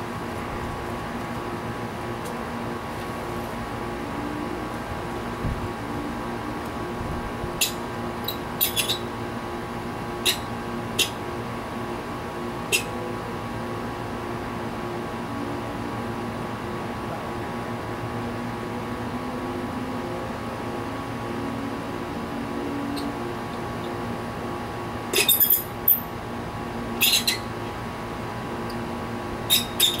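Sharp glassy clinks and clicks from handling an outdoor wall light fixture and its bulb. They come singly at first, then in quick clusters near the end, over a steady background hum.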